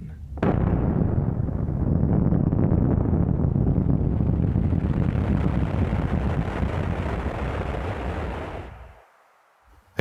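Atomic bomb explosion: a sudden blast followed by a continuous low rumble that lasts about eight seconds and fades out near the end.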